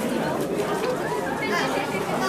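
Many voices chattering at once: the overlapping talk of a group of people milling around, with no one voice standing out.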